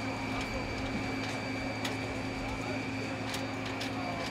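Steady hum of a parked airliner with a high whine held on one pitch, and a few sharp clicks now and then.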